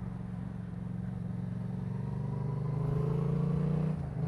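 2015 Yamaha MT-07's parallel-twin engine running through a full Leo Vince aftermarket exhaust as the bike rides on, its note steady at first, then rising gradually as it accelerates over the last couple of seconds.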